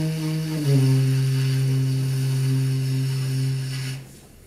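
Tenor saxophone holding slow, low notes: one note steps down to a lower one just under a second in, is held, and stops near the end.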